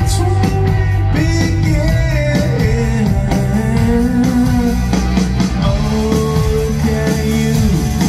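Rock band playing live: singing over electric guitar, bass guitar and drums, loud and steady, heard from the audience in a large hall.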